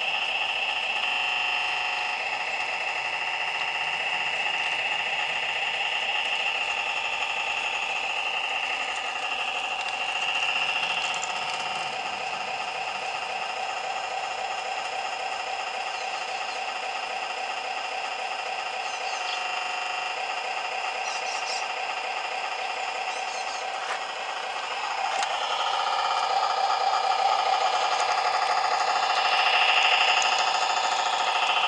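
Electronic small-diesel engine sound from a model railway sound module's small loudspeaker, a steady pitched engine note with little bass that shifts a few times and gets louder from about 25 seconds in.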